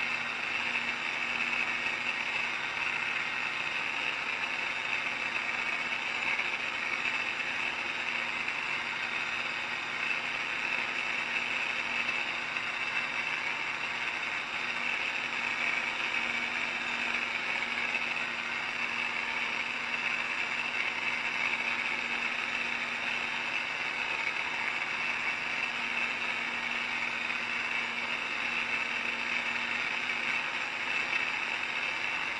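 Holmer Terra Variant 600 self-propelled slurry applicator heard from inside its cab: the engine and drivetrain running at a steady speed, an even drone with a constant low hum under it.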